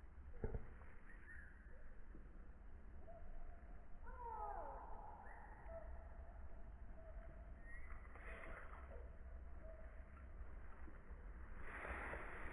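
Quiet outdoor ambience over a low steady rumble, with a single knock just after the start and faint calls of a distant bird falling in pitch about four seconds in.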